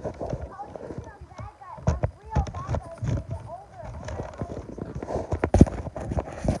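Knocks and rubbing from a phone being handled and swung close to its microphone, with a child's voice making wordless sliding sounds in the middle of the stretch.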